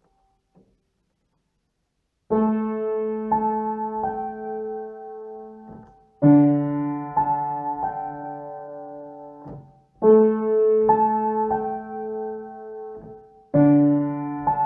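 Near silence for about two seconds, then a piano-toned keyboard plays slow held chords, a new chord roughly every four seconds, with a few melody notes above them.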